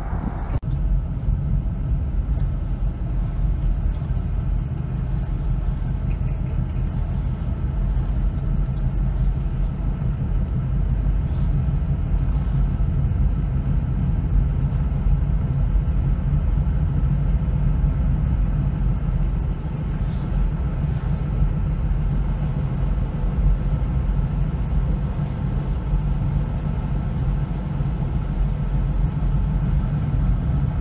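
Steady low rumble of a car driving, heard inside the cabin: engine and tyre noise with no sharp events.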